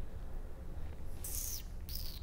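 Faint steady low room hum, with a short breathy hiss a little over a second in: a person drawing in breath.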